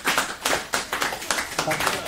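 A few people clapping their hands in uneven claps, with voices talking over them.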